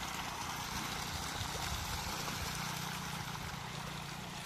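Steady splashing and rushing of pond water as a shoal of pangasius catfish churns the surface while feeding, over a low steady hum.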